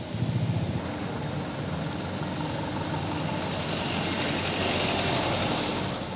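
Road traffic: vehicle engines running slowly and idling as cars and trucks move through one at a time, with a steady hiss behind them. An engine throbs low near the start, and the noise grows a little louder toward the end.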